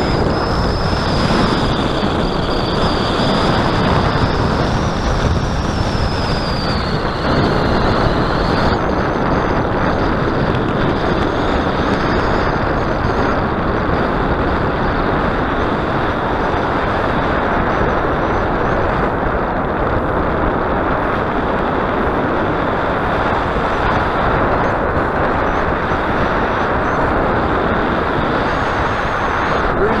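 Loud, steady wind rushing over the microphone of a paraglider in flight. A faint high tone wavers in pitch through the first eight seconds or so.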